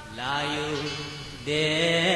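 A Pa-O song: a sung melody line with held, wavering notes, a new, louder phrase coming in about one and a half seconds in.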